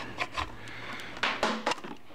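Handling noises: scattered light clicks, rubs and scrapes as a hand rummages among a motorcycle's under-seat wiring and pulls the speed-sensor wire free.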